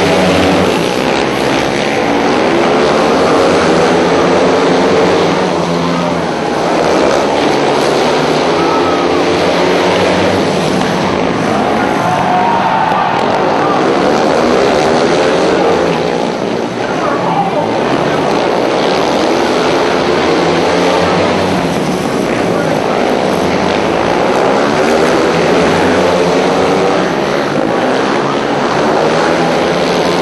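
Several speedway racing motorcycles running flat out together, their single-cylinder engines revving with the pitch rising and falling over and over.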